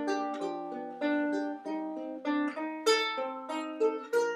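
Ukulele strummed in a steady rhythm, the chords changing about every half second, playing a song's introduction before the singing comes in.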